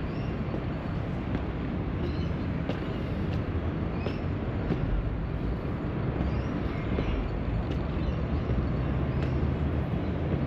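Steady low rumble of city traffic, with faint short high chirps and a few light ticks over it.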